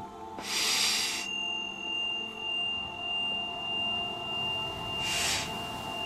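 Soft ambient meditation music of sustained pure tones that swell and ebb slowly, with a high steady tone coming in about a second in. Two short breathy hisses, one near the start and one near the end.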